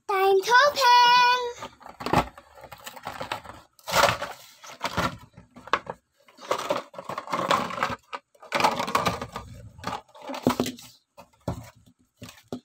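A child's short sung note at the start, then irregular crinkling and tearing of a plastic blister pack and its cardboard backing card as a toy monster truck is pulled out of its packaging.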